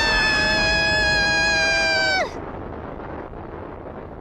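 An animated character's long, high-pitched scream, held for about two seconds and dropping away in a quick falling glide, as the character is caught in a fire blast. After it a quieter, steady rumbling noise of the blast goes on.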